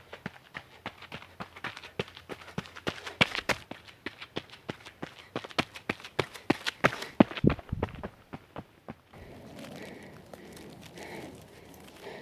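Running footsteps of trail shoes striking a dry dirt-and-gravel path, quick crunching strides at a few per second. They grow louder as the runner approaches, are loudest about seven seconds in and stop about nine seconds in. A quieter steady rustle follows.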